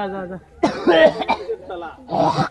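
Villagers' voices shouting and calling out, with a harsh, cough-like shout about half a second in.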